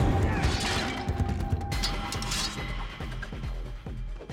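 Fight sound effects over background music: a few sharp crashing and striking impacts as weapons swing and hit.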